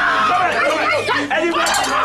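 Several voices shouting over one another in a loud group prayer chant.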